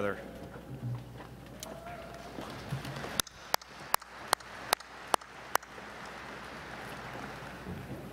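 A man clapping his hands close to a microphone: seven sharp claps at about two and a half a second, between about three and five and a half seconds in, over a faint steady haze of room noise.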